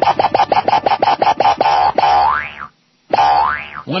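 The end of a comic song: a fast run of repeated "boing" syllables, about seven a second, that stops about two seconds in with a rising boing glide. A short gap follows, then one more rising boing.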